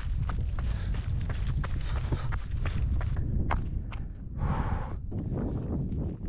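A runner's footsteps on a gravel track, about two to three a second, under a steady wind rumble on the microphone, with a short breathy exhale about four and a half seconds in.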